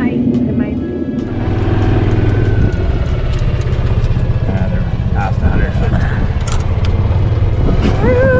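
Golf cart running as it drives across the course, with a steady low hum that sets in about a second and a half in and scattered light rattles.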